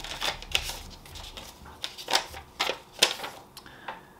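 A folded sheet of paper being unfolded and handled, with a string of irregular crackles and ticks that die away near the end.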